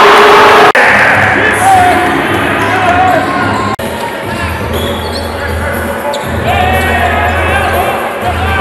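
A basketball bouncing on an indoor court during play, with crowd voices and arena music underneath. The sound drops out sharply twice, once about a second in and again near the middle.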